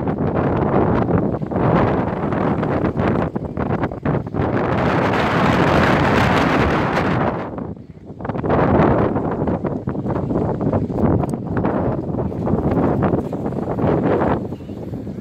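Wind buffeting the microphone in loud, uneven gusts. It eases for a moment about eight seconds in, then picks up again.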